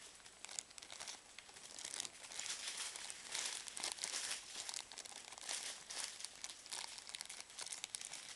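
Clear plastic packaging bag crinkling as it is handled, in uneven rustles that grow somewhat louder about two seconds in.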